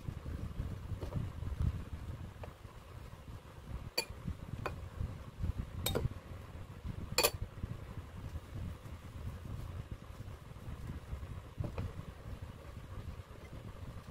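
Light handling sounds on a ceramic plate as hands lay out soft blanched pumpkin leaves for wraps, with four sharp clicks of dishware between about four and seven seconds in, over a low rumble.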